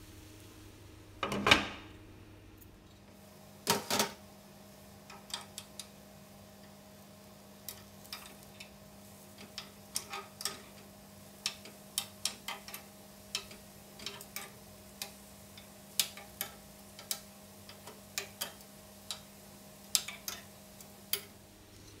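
Metal spoons clinking and tapping against a mini martabak cake pan as small cakes are turned over in their cups. There are two louder clanks in the first few seconds, then a long irregular run of light ticks and taps over a faint steady hum.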